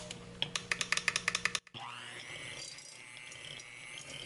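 A quick run of sharp clicks, then an electric hand mixer starts up with a rising whine and runs steadily, its metal beaters creaming butter and cream cheese in a glass bowl.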